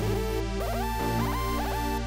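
Electronic beat melody playing back from stock FL Studio synths: layered synth notes that slide in pitch, over a steady low bass.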